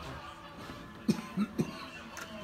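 Someone close by coughs three times in quick succession about a second in, over background music.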